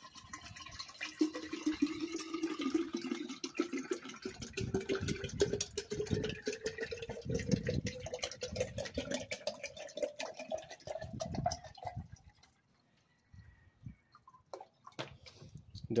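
Distilled water poured in a steady stream from a plastic jug into a tall glass jar, splashing, its pitch rising as the jar fills. The pour stops about twelve seconds in, followed by a few light knocks.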